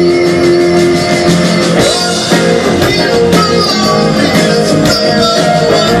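Live rock band playing amplified electric guitars, bass and drum kit, loud and steady. A held chord opens the passage, then the drum beat comes in plainly about two seconds in.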